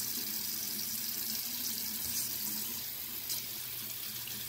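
Water running steadily from a bathroom faucet into the sink as a makeup brush is rinsed under the stream.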